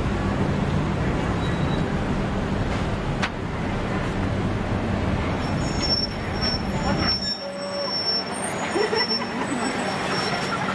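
Street traffic noise: a steady low engine rumble that cuts out about seven seconds in.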